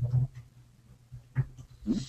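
A person's brief vocal sound, a short pause, then a man beginning to speak near the end.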